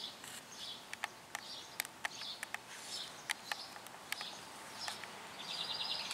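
Songbirds chirping faintly in the background, short calls scattered throughout, with a few sharp ticks. A rapid trill starts near the end.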